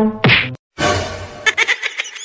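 A single sharp whack about a quarter second in, as the music breaks off. After a brief silence comes a noisy rush, then a quick run of clicks and short squeaky chirps.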